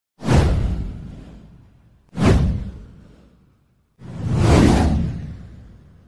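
Three whoosh sound effects from an animated title intro. The first two hit suddenly and fade away over about a second and a half each; the third swells in about four seconds in and fades out toward the end.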